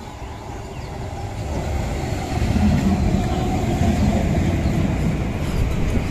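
Passenger train moving alongside a station platform: a steady rumble of wheels on the rails, growing louder about two seconds in.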